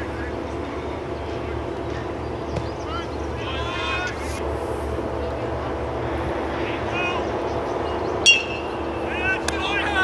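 Ballfield ambience: a steady low hum with players' distant calls and chatter, then about eight seconds in a single sharp metal-bat ping with a brief ring as the ball is hit, followed by more shouts from the players.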